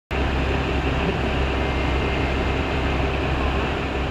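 Coach bus engine idling at the curb: a steady low rumble with an even hiss over it.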